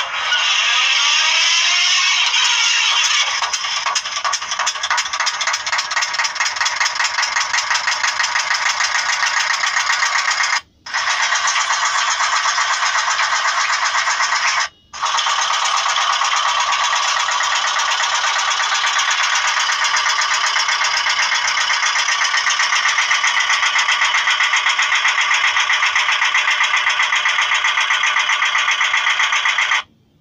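Village mill machinery running with a fast, even mechanical beat, played back through a feature phone's small speaker, so it sounds thin with no bass. It cuts out briefly twice, about a third and half of the way in.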